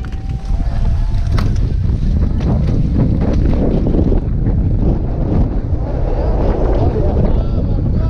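Heavy wind rumble on a helmet-mounted camera's microphone as a downhill mountain bike descends at speed, with clattering from the bike over rough grass.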